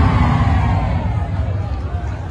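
Large crowd of spectators cheering and shouting as the performance music ends, with a final note falling and fading out over the first second and a half.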